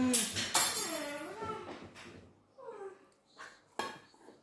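Spoon scraping and clinking against a rice bowl while eating, with a couple of short gliding hums between bites and a sharp clink just before the end.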